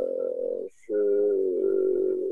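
A man's voice holding two long, drawn-out hesitation sounds ('euh') at a steady pitch, with a short break between them about two-thirds of a second in.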